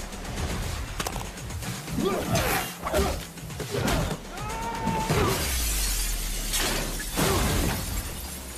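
Glass shattering in a run of crashes, the loudest about seven seconds in as glass showers down onto a car, over music.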